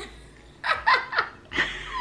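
A woman laughing in short bursts, starting a little over half a second in and picking up again near the end.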